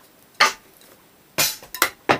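Three separate drumstick strikes on the pad of an electronic drum kit, short dry taps spaced unevenly: one near the start, then two close together about a second later.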